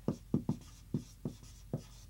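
Marker writing on a whiteboard: about six short, separate strokes as a word is written out.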